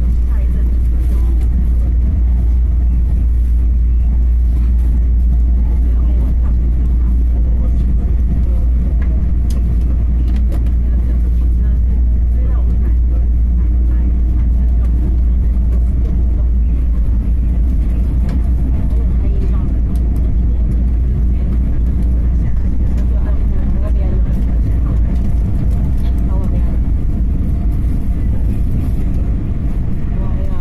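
Steady low rumble of a Taiwan Railways EMU3000 electric multiple unit running at speed, heard from inside the passenger car: wheels on rail and running gear, with faint voices in the background.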